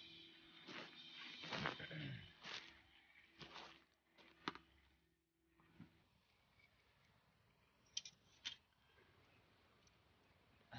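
Near silence, with a few faint scattered clicks and knocks in the first half and two sharp clicks about eight seconds in.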